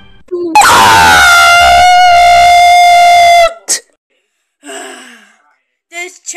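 A very loud, distorted high-pitched scream lasting about three seconds, dropping in pitch at the start and then held on one note. A short blip and a quieter breathy sound follow.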